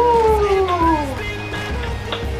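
A young woman's laugh: one long voiced note that falls in pitch over about a second, over steady background music.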